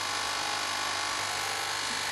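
Capsule coffee machine's electric pump buzzing steadily as it pushes water through the capsule. What runs out is almost clear water rather than coffee.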